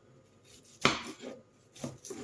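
Kitchen knife chopping onion on a wooden cutting board: a sharp knock a little under a second in, a few lighter knocks just after, and another knock near the end.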